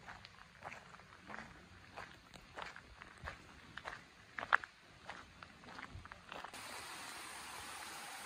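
Quiet, irregular footsteps crunching on a gravel path. About six and a half seconds in they give way to a steady hiss of running water.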